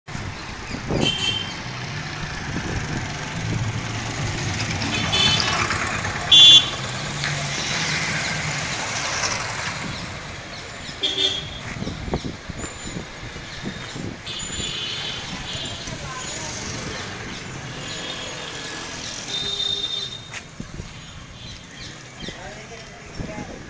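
Town street traffic: motorcycle engines running past, with repeated short horn toots, the loudest about six and a half seconds in.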